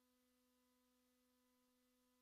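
Near silence, with only a very faint, steady electronic hum.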